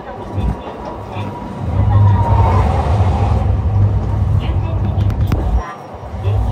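Interior running noise of a Sapporo streetcar, an A1100 low-floor tram, moving along its street track. A steady rumble swells louder about a second and a half in and holds, with a faint steady whine early on and a few sharp clicks near the end.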